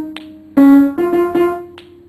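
Upright piano being played in short phrases: a loud group of notes about half a second in and another run around a second in, each left ringing and dying away. A sharp click sounds in the pause just after the start and again near the end.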